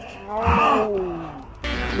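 A child's groan that falls in pitch over about a second, after crashing into a bush. Background music starts near the end.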